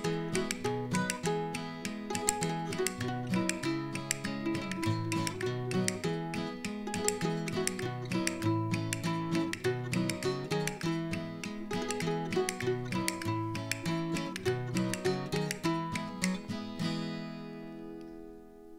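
Acoustic guitar and mandolin playing a traditional Québécois tune as an instrumental ending, with fast plucked notes over strummed chords. Near the end the last chord rings and fades away.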